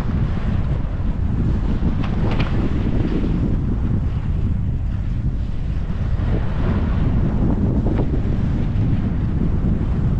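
Wind buffeting the microphone of a skier moving downhill, with the hiss of skis sliding on snow that swells twice, about two seconds in and again near seven seconds.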